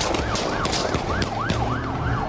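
Emergency vehicle siren on the yelp setting: a rapid wail that rises and falls several times a second.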